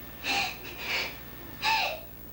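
A woman's breathing: three short, sharp breathy catches about two-thirds of a second apart, the last the loudest.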